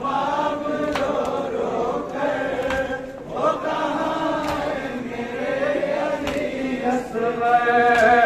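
Men's voices chanting a noha (Muharram lament) together in a slow, drawn-out melody, with a few sharp strikes at irregular intervals.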